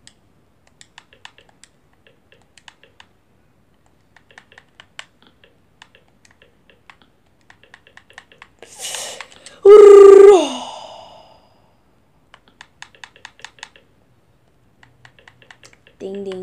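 Runs of light, quick clicks from an Xbox One controller's buttons as letters are picked one by one on the on-screen keyboard. About nine seconds in, a breathy rush and then a loud, short vocal sound held on one pitch that drops at the end.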